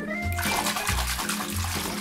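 Background music with a steady bass beat, over water splashing and running in a plastic basin from about half a second in as a dog's paws are washed.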